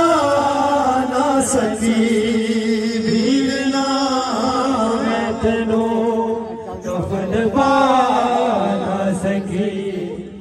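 Noha, a Shia lament for Imam Hussain, chanted in Punjabi, with long drawn-out notes that bend slowly in pitch. The singing eases briefly around seven seconds in, then carries on.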